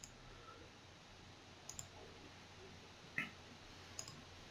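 Computer mouse clicking a few times over a faint hum, including a quick double click just before the middle and a louder click near the end.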